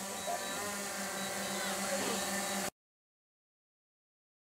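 Steady buzzing whine of a small quadcopter drone's propellers as it hovers, with faint voices in the background; the sound cuts off abruptly about two-thirds of the way in.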